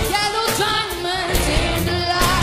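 A female lead voice singing live into a microphone over a full pop-rock band with a steady drum beat.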